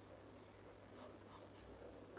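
Faint scratching of a pen on paper as a word is written and underlined.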